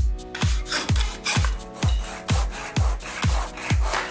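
Rasping strokes of a small hand saw cutting through a wooden paint stick and of the stick being rubbed on sandpaper, under background electronic music with a steady beat.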